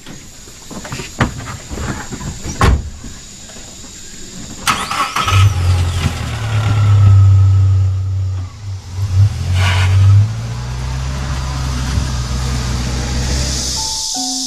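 A minivan's driver door shuts with a sharp knock, then about five seconds in its engine starts and runs loud for several seconds before settling to a steadier, softer hum.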